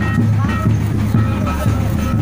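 Double-headed barrel drums beaten in a quick, steady dance rhythm, with the voices of the crowd over them.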